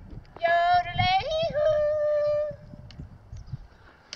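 A person's high yodeling call in falsetto: one held note that drops to a slightly lower held note about a second in, lasting about two seconds in all.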